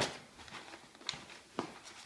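Stiff brown kraft-paper packaging rustling as it is pulled open by hand, with a sharp crackle at the start and two brief crackles in the second half.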